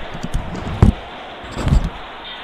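Padel ball hits during a rally: a sharp hit a little under a second in, then another hit or two close together near the end, with fainter knocks between them.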